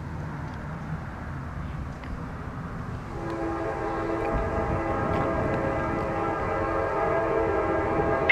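Air horn of a Norfolk Southern GE Dash 9-44CW locomotive sounding one long, steady chord, starting about three seconds in and growing louder as the train approaches a grade crossing. It is heard over the low rumble of the oncoming train.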